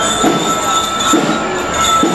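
A school drum and lyre band playing: bell-lyres ring out in high sustained tones over a drum beat that recurs about every 0.8 seconds.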